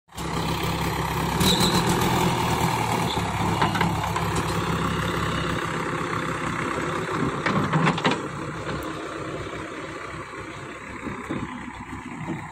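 JCB 3DX backhoe loader's diesel engine running steadily while the backhoe arm digs soil. Sharp metallic clanks come from the bucket and arm about a second and a half in, near four seconds and around eight seconds. The engine then grows quieter as the machine moves off.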